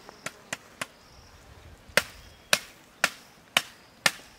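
Chopping strokes of a blade on a green branch: three light taps, then four sharp strikes about half a second apart.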